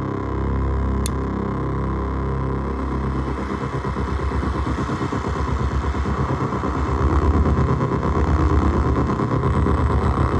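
Korg Volca Keys synthesizer played through an Iron Ether FrantaBit bit-crusher pedal, its sound changing as the pedal's knobs are turned. A low, gritty drone with a stepped, repeating pattern turns about three or four seconds in into a fast, sputtering buzz that gets louder in the second half.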